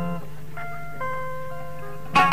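Solo oud improvisation (taqasim): sparse single plucked notes left to ring out, with a new note about half a second in and another a second in.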